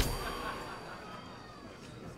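The ringing tail of a loud metallic clang, several high tones dying away slowly over about two seconds.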